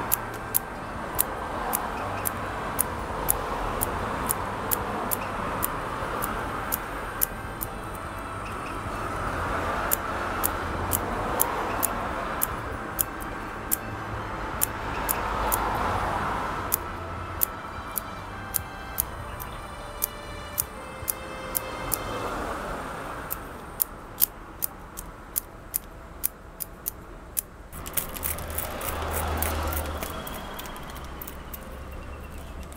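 Steel bonsai scissors snipping through the fine roots of a hinoki root ball, with a sharp snip every second or so that comes quicker in the later part. Under the snips runs a soft background noise that swells and fades.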